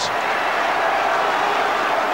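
Large football stadium crowd cheering steadily, a dense noise of many voices, celebrating a stoppage-time goal.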